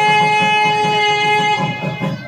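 Nadaswaram (South Indian double-reed temple horn) holding one long steady note over a steady beat of thavil drum, playing auspicious temple music. The note breaks off about one and a half seconds in while the drum goes on.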